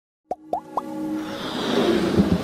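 Animated logo intro sound design: three short blips, each rising in pitch, about a quarter second apart, followed by a musical build that swells steadily louder.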